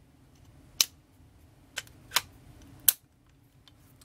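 AR-15 upper and lower receivers being fitted back together by hand: four sharp metal clicks, the last three coming within about a second of one another.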